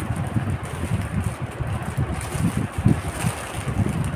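A plastic courier bag rustling as it is handled and torn open by hand, over an irregular low rumble like wind buffeting the microphone.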